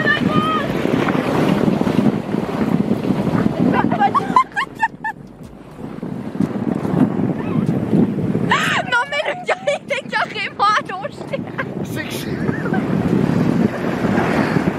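Sled sliding over snow with a steady scraping rush, broken by bursts of high-pitched laughter and shrieking about four seconds in and again around nine to eleven seconds.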